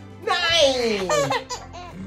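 A ten-month-old baby laughing in response to a counting game: one long laugh falling in pitch in the first second, then a few short laughs.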